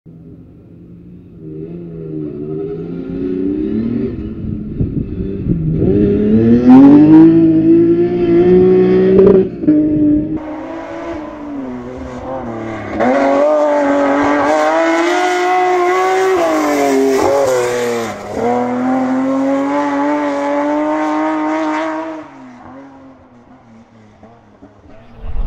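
BMW 3 Series rally car's engine revving hard under acceleration, pitch climbing and then dropping at each gear change. It grows loud as the car approaches and fades away near the end.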